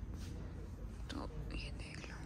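Hushed, whispered speech: a few breathy words about a second in and again near the end, over a steady low background rumble.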